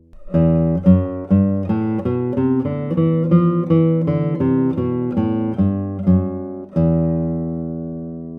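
Kazuo Sato Prestige 2022 classical guitar, spruce top with Madagascar rosewood back and sides, played fingerstyle. A melodic run of plucked notes, about three a second, ends near the end on a chord that rings on and slowly fades.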